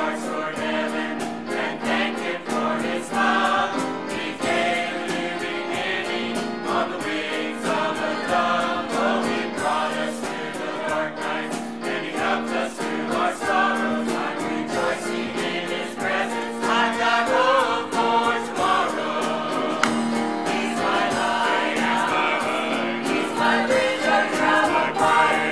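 Mixed church choir of men and women singing a gospel song in unison and harmony, over an accompaniment with a steady beat.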